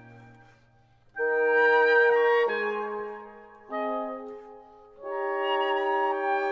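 Classical wind soloists (flute, oboe, horn and bassoon) playing a slow passage of held chords. After a near-silent pause, three sustained chords come in, about a second in, at about four seconds and at about five seconds, each dying away before the next.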